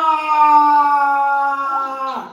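A woman's voice holding one long sung note that slowly falls in pitch and breaks off near the end.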